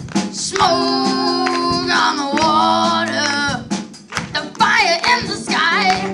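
Live rock band: a boy singing lead into a microphone over guitar and a drum kit. The music dips briefly about four seconds in before the voice comes back.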